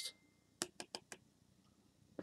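Four quick, faint clicks about a fifth of a second apart from a beer can and glass being handled on a table.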